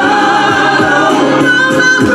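Gospel praise team of several singers singing into microphones, amplified, over musical accompaniment, holding long notes.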